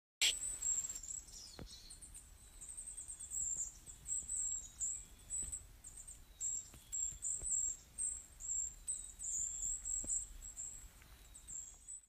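Forest ambience of small birds giving many short, very high-pitched chirps over and over, with a faint low rumble underneath.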